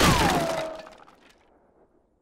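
Cartoon crash sound effect of something breaking, struck right at the start, with a falling whistle-like tone that drops and settles as it fades out within about a second.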